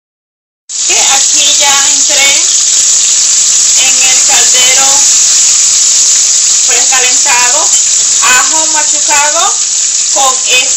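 Onion and peppers frying in oil in an aluminium pot: a loud, steady sizzle that starts suddenly less than a second in, with a voice heard over it several times.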